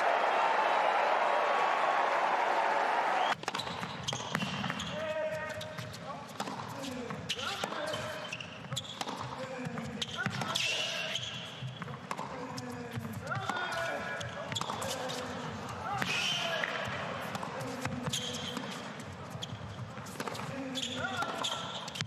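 Stadium crowd cheering and applauding for about three seconds, cut off abruptly. Then the sounds of a tennis rally on an indoor hard court: sharp racket-on-ball strikes and ball bounces, with squeaks from the players' shoes.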